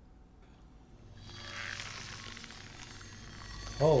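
Film soundtrack ambience: near silence at first, then a soft, airy wash that swells in slowly from about a second in.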